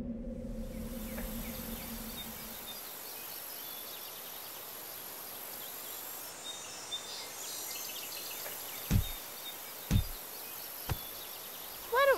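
Outdoor ambience: a steady high-pitched insect drone with faint bird chirps, as a music cue fades out in the first couple of seconds. Near the end come three dull thumps about a second apart.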